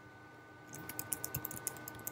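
Typing on a computer keyboard: after a brief quiet, a quick run of light key clicks begins about two-thirds of a second in, as a word is typed.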